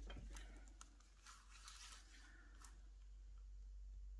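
Near silence with a few faint rustles and light ticks as a tape measure is laid across two crocheted lace squares on a table.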